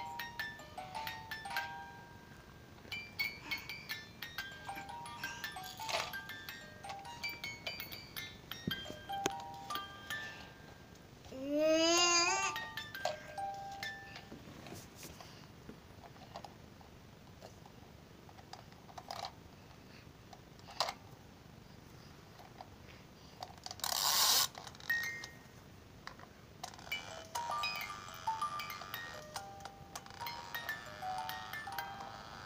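A battery-powered baby toy playing a simple electronic tune of short beeping notes, which stops about halfway through and starts again near the end. Around the middle comes a loud rising, warbling sound, and later a brief loud burst of noise.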